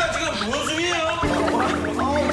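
Edited background music with a fast, even run of short, high blips, under voices.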